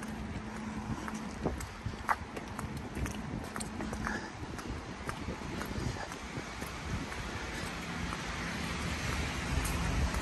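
Steady rain with footsteps ticking on wet pavement at a walking pace, over a low hum of passing traffic.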